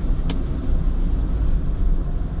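Car cabin noise while driving: a steady low rumble of engine and tyres on the road. There is one short click about a third of a second in.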